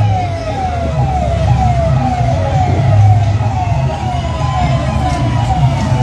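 A siren repeating a quick falling tone about twice a second, over the running engines of a column of tractors; a second, longer rising-and-falling tone joins about four seconds in.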